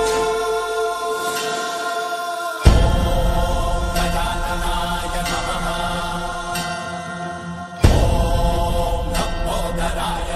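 Hindu devotional music with chanting, held tones over a drone. A loud low hit opens a fuller, heavier passage about three seconds in, and again near eight seconds.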